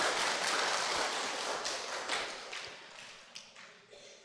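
Audience of children clapping, fading away over the last couple of seconds.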